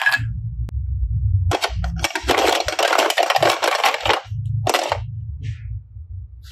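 Hard plastic toy pieces clattering and knocking together as they are handled, a dense run of clicks and rattles from about a second and a half in until about five seconds in.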